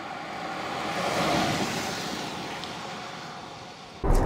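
A Land Rover Discovery 3 with a 2.7-litre turbo-diesel V6 driving past. Its engine and tyre noise on the road swell as it approaches, peak about a second and a half in, then fade as it moves away.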